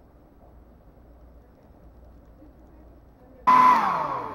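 Faint room noise, then about three and a half seconds in a hand-held hair dryer cuts in loud with a whining tone that then falls in pitch as its motor winds down.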